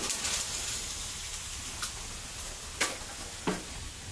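Wet concrete mix being shovelled and sliding down a steel chute: a steady gritty hiss and scrape, with a few short knocks of the shovel on metal in the last second or so.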